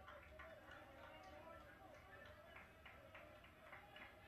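Near silence: faint room tone with a few faint, irregular ticks.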